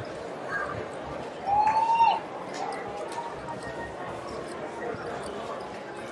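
Casino table ambience: a murmur of background chatter with light clicks of clay chips and cards on the felt. About a second and a half in comes a short, high tone that slides slightly up, then drops off.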